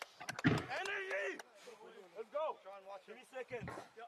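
Rugby forwards shouting to one another as they pack down for a scrum: a string of short, arching calls, quieter than the commentary, with a few sharp clicks about a third of a second in.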